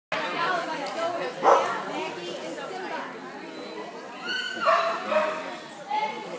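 A dog barking a few times over people's chatter.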